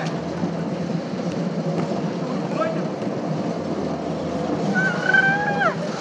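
Bumper cars running on a rink: a steady hum and rumble with voices underneath. Near the end a long drawn-out call rises and then drops away.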